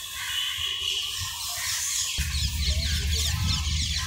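Birds chirping in many quick, high calls, growing busier through the second half. A low rumble comes in about two seconds in.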